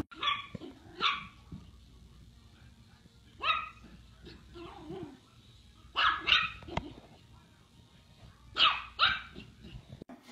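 English bulldog barking in short, sharp barks, mostly in pairs, with pauses of a second or two between them.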